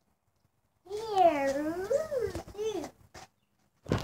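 A young child's long wordless vocal sound, wavering up and down in pitch for about two seconds, followed by a couple of short sounds. A brief bump right at the very end.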